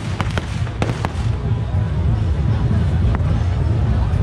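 Firecrackers going off: a quick run of sharp bangs in the first second and a single bang about three seconds in, over a dense, steady background din.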